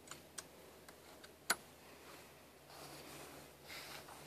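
A few sharp clicks, the loudest about one and a half seconds in: the tent shell's clips snapping onto the cot's metal frame. Soft rustling follows near the end.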